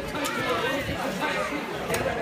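Several people talking at once: overlapping voices and chatter, none of it clear.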